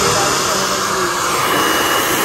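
Handheld hair dryer blowing steadily and loudly while hair is being blow-dried.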